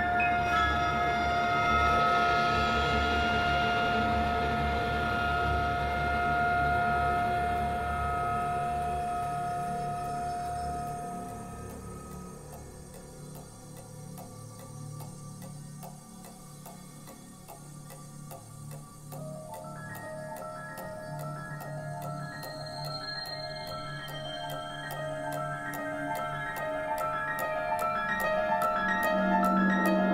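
Chamber ensemble playing contemporary concert music. Sustained held notes over a low rumble fade out about twelve seconds in, leaving a quiet, steady clock-like ticking. About twenty seconds in, short repeated notes start pulsing evenly over the ticks.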